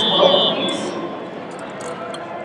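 Indistinct voices in a large, echoing hall, with a steady high tone that stops about half a second in, leaving a low murmur of background noise.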